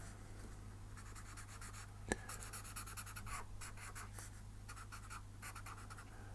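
Felt-tip marker scratching on paper in short, quick strokes, hatching reflection lines into drawn windows, with one sharp tap about two seconds in. A steady low hum runs underneath.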